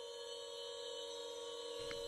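A steady drone of several held tones from an ambient electronic music bed, growing slowly louder.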